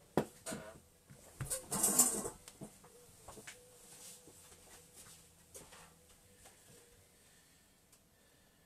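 Handling noises on a desk: a sharp click, a few knocks and a brief rustle about two seconds in, then faint irregular ticks.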